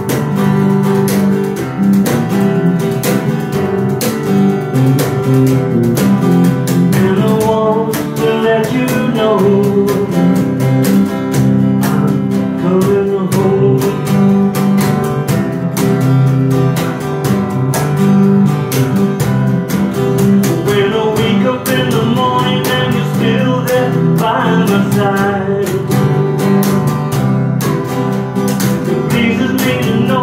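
Live acoustic band playing: strummed acoustic guitar and bass guitar over a steady cajon beat, with a man's voice singing in places.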